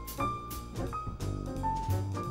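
Jazz piano trio playing live: a single-note piano melody line over double bass, with the drummer's cymbal strokes keeping time.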